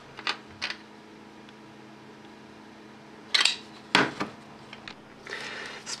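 Small sharp metal clicks as a nut is threaded by hand onto a stud-mounted thyristor on an aluminium heatsink: two in the first second and a cluster about three to four seconds in, then a brief rustle near the end. A faint steady hum runs underneath.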